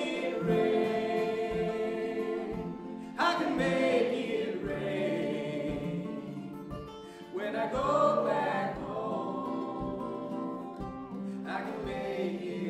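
Voices singing long held notes in harmony, a new phrase starting about every four seconds, over acoustic guitar and mandolin.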